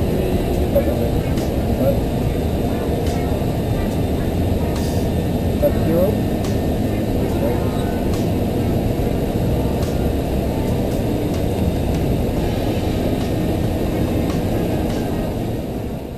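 Steady cockpit noise of an Airbus A330 in its climb after takeoff, a dense low rush of airflow and engines, with faint voices now and then. The noise starts to fade right at the end.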